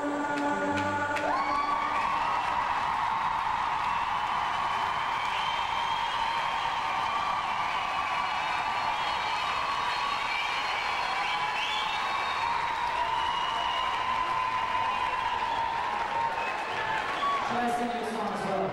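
A concert audience applauding and cheering, with whistles in it, as the last notes of an acoustic guitar song die away in the first second.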